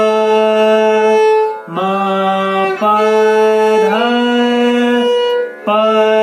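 Violin playing a slow alankar exercise: groups of three rising notes, each group slurred in a single bow stroke. There are brief breaks for the bow change about one and a half seconds in and again near the end.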